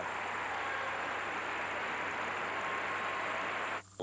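Arena crowd applauding, a steady dense wash of clapping that cuts off abruptly near the end.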